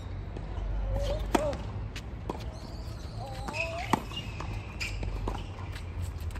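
A tennis ball bouncing on a hard court: a few separate sharp bounces, the loudest about four seconds in. Two short voice-like calls are heard in between.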